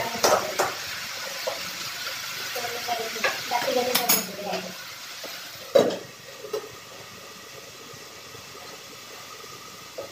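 Metal tongs scraping and stirring vegetables frying in a steel kadai, with sizzling. About six seconds in there is a sharp clank as the lid goes on, after which the frying is quieter.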